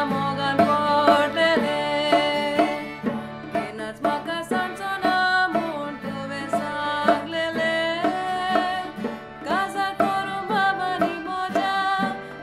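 A Konkani song: a woman singing over a small band of accordion, acoustic guitar, trumpet and saxophone, with a regular percussive beat.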